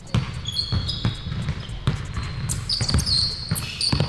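A basketball dribbled on an indoor gym floor, bouncing about twice a second, with short high sneaker squeaks on the court.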